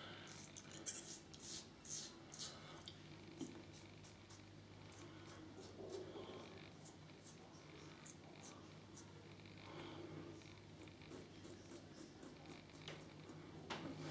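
Faint, short scraping strokes of an Edwin Jagger 3ONE6L stainless steel double-edge safety razor cutting stubble on the upper lip and chin, coming in quick, irregular succession.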